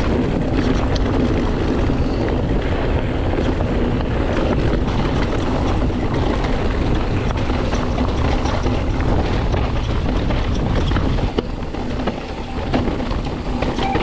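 Mountain bike riding down a gravel trail, heard from the camera on the rider: a steady rush of wind on the microphone over tyres rolling on dirt and stones, with scattered clicks and rattles from the bike over bumps. About eleven seconds in, the noise drops a little and turns choppier.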